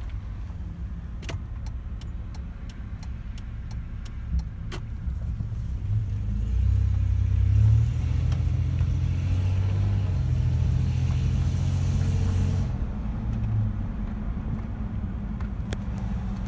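A 2000 Toyota 4Runner's 3.4-litre V6 heard from inside the cabin while driving: a low, steady engine drone that swells as the truck accelerates about six seconds in, holds with added road noise, and eases off near thirteen seconds. Faint ticking about three times a second runs through the first few seconds.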